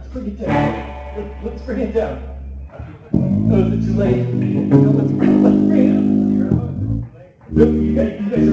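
A live band playing, with bass guitar and electric guitar to the fore. Shifting notes in the first seconds give way to loud held notes from about three seconds in, with a brief break just before the end.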